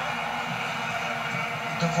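Steady drone of many vuvuzela horns from a stadium crowd in a football broadcast, played through a flat-screen TV's speakers.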